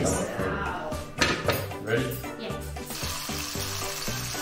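Hot oil in a wok starting to sizzle about three seconds in as a sauce is spooned into it, over background music.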